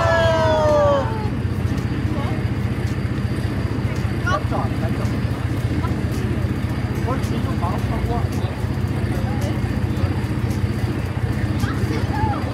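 Busy harbour ambience: a steady low rumble with faint scattered voices from the crowds along the quay. A loud cluster of high, falling cries sounds in the first second.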